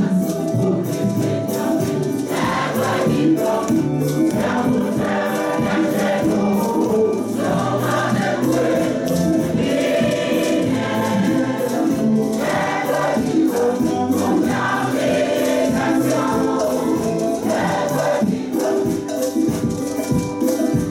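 Choir singing a gospel praise and worship song, with hand percussion keeping a steady beat.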